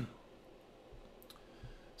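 Faint room tone in a pause, with two small, quick clicks a little past halfway.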